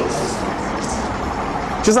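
A steady rushing noise, about as loud as the speech around it, that cuts off suddenly near the end as a man's voice comes back in.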